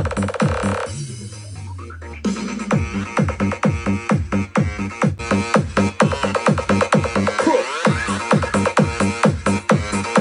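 Electronic dance music with a heavy, steady beat played through a Hopestar P49 portable Bluetooth speaker. The beat drops out about a second in under a falling bass sweep, then kicks back in about two seconds in.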